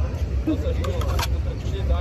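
Voices talking in the background over a steady low rumble, with a couple of sharp clicks a little after a second in.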